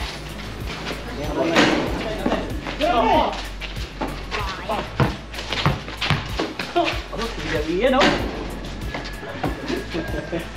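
Background music with men's voices calling out now and then, over repeated sharp knocks that fit a basketball bouncing on a concrete court.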